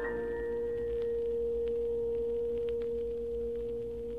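Orchestra holding one long sustained chord in a piano concerto, steady and then starting to fade near the end, with faint clicks of LP surface noise.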